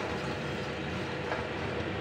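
Dry split moong dal grains rattling and a spatula scraping across a steel kadhai as the lentils are stirred while dry-roasting on a low-medium flame: a steady rustling scrape with a light knock about halfway through.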